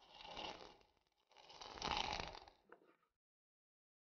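Hand-held spice grinder being twisted over a saucepan: two scratchy grinding bursts of about a second each, with a small click near the end of the second.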